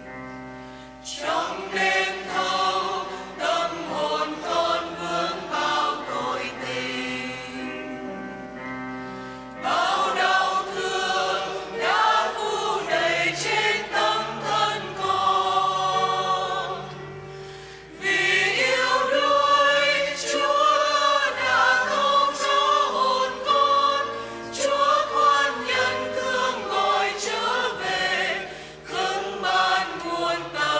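A church choir sings the recessional hymn at the end of Mass in long sung phrases, with brief breaks between them about a second in, around nine seconds in and around eighteen seconds in.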